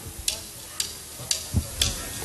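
A drummer's count-in: four sharp, evenly spaced ticks about two a second, with a low thud under the last two.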